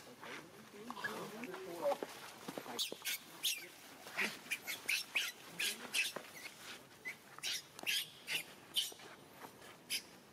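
Baby macaque crying in distress as an adult pins and drags it. Wavering cries in the first two seconds give way to a rapid run of short, high-pitched shrieks, about two or three a second, until near the end.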